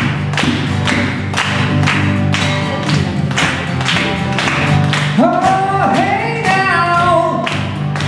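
Live band playing: acoustic guitar strummed in a steady rhythm with a djembe, and a voice starts singing about five seconds in.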